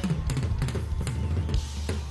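Pearl drum kit played live in a busy run of kick and drum hits, with a steady low bass underneath.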